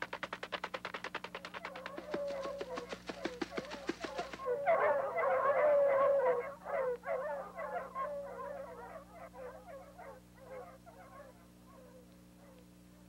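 A fast, even patter of running footsteps, about eight steps a second, for the first four seconds or so. Then a pack of dogs barking and yelping, loudest just after they start and fading away toward the end.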